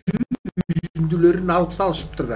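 The programme sound breaks up for about the first second, cutting in and out to dead silence about nine or ten times in quick succession: a stuttering dropout glitch in the audio. After that, speech carries on normally.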